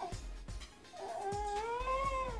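Small dog whining: one long drawn-out whine starting about halfway in, rising a little and then falling, the dog crying.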